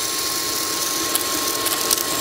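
Tefal Air Force 360 Light Aqua cordless stick vacuum running on its 63,000 rpm brushless motor, a steady hum with a faint whine, with a scatter of clicks in the second second as small beads are sucked into the floor head.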